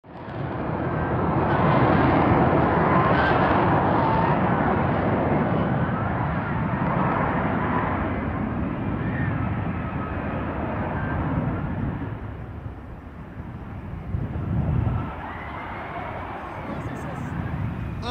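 An F-35B's jet engine running in a low hover as the jet descends to land, a loud steady roar. The roar eases after about twelve seconds, with a brief low swell near fifteen seconds.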